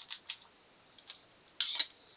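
Small clear container handled in the hands: a few light clicks, then a short, louder scrape or rattle near the end.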